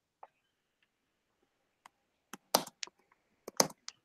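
Scattered sharp clicks at a computer, as from keys and a mouse being worked, heard through a video-call microphone. There are about eight clicks, the loudest coming in two small clusters in the second half.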